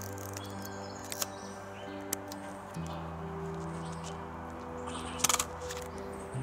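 Slow background music of held chords, the chord changing about three seconds in. Near the end a sharp double clack stands out, the Pentax 6x7's shutter and mirror firing.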